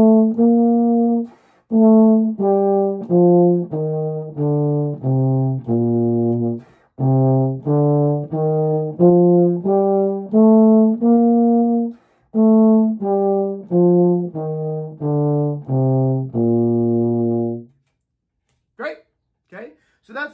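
Euphonium playing a one-octave concert B-flat major scale in detached notes: it finishes a descent to low B-flat, then climbs back up and comes down again, with longer notes at the top and bottom. It stops on the held low B-flat about three-quarters of the way through, followed by two brief sniffs near the end.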